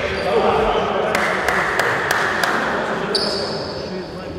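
Basketball dribbled on a gym floor, about five bounces at an even pace of roughly three a second, echoing in a large hall over players' voices; a thin high squeal comes in near the end.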